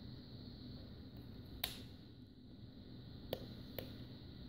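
Three small sharp clicks from handling a plastic clamp meter, over a faint low steady hum.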